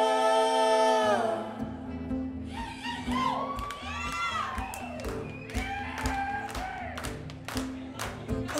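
A held, many-voiced sung chord ends about a second in; then the band starts the song's intro with strummed acoustic guitar and percussive hits, while the audience cheers and whoops.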